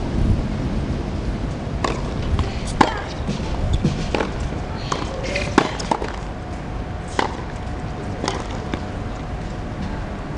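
Tennis rally: tennis balls struck by rackets, sharp pops coming every second or so, over a low rumble of wind on the microphone.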